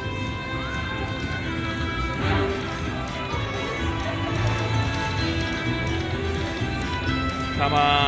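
Aristocrat Buffalo Max slot machine's free-spins audio: electronic game music with galloping hoofbeat effects as the reels spin. Bright chimes ring as the reels stop, about two seconds in and again near the end.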